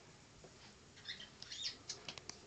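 Faint rustling and clicking of small toys and their packaging being handled, starting about a second in as a scatter of short, high scratchy sounds and clicks.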